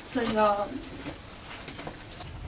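A person's brief wordless vocal sound, about half a second long near the start, followed by faint scattered clicks.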